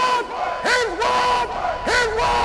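A group of voices letting out rhythmic shouts, like a war chant. There are three cries, each swooping up in pitch and held briefly, and a longer held cry begins near the end.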